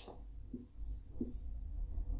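Marker pen writing on a whiteboard, faint: two short high squeaks about a second in, with a couple of soft low knocks around them.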